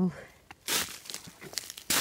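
Footsteps crunching on thin snow over dry leaf litter: a few uneven crunches, the loudest near the end.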